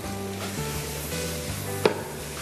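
Cassava, bacon and cheese frying in a hot pan, a steady sizzle, with one short sharp click near the end.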